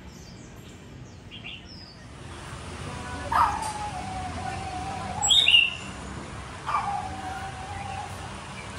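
Bird calls: faint high chirps, then long whistles that slide down and hold, one about three seconds in and another near the end, with a sharper, higher call between them, over steady street noise.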